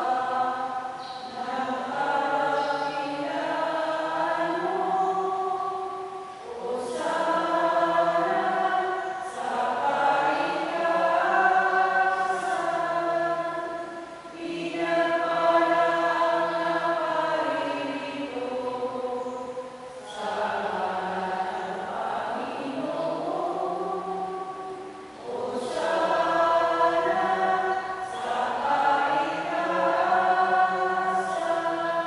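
Choir singing a slow hymn in long phrases of held notes, with short pauses between phrases every few seconds.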